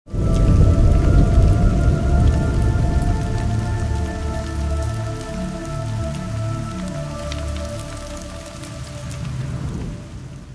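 Intro logo sting: a deep rumble with a crackling, rain-like hiss and scattered ticks over held synth tones. The rumble is strongest over the first few seconds, then everything slowly dies away.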